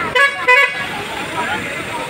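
A vehicle horn gives two short, loud toots about half a second apart near the start. Crowd chatter and traffic noise carry on after them.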